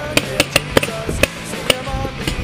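Background music with guitar notes, with about five sharp, irregularly spaced cracks of paintball markers firing in the game.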